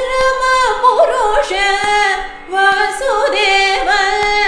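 Female Carnatic vocalist singing an ornamented melodic line, her notes gliding and oscillating (gamakas), over a steady drone, with a short breath break about two and a half seconds in.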